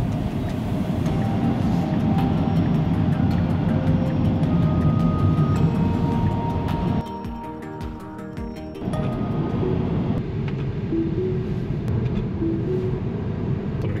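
Background music with short, steady held notes, over the low rumble of road noise inside a moving car. The sound drops and thins for about two seconds midway.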